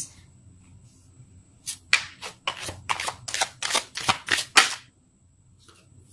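Tarot cards being shuffled by hand: a quick run of about a dozen sharp card snaps, roughly four a second, starting a couple of seconds in and stopping about a second before the end.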